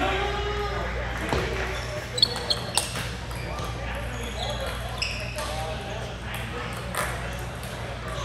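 Table tennis balls clicking off paddles and tables, with three quick hits about two seconds in and single clicks later, over voices talking.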